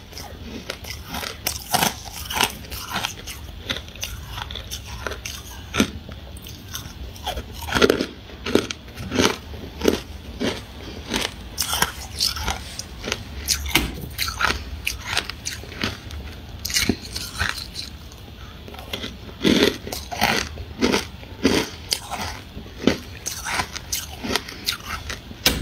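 Close-miked chewing of crunchy freezer frost: a steady run of sharp, irregular crunches, several a second, with now and then a louder bite.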